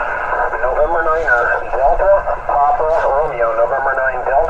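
A distant station's voice received on an HF transceiver and heard through its speaker: thin, narrow-band single-sideband speech over steady receiver hiss.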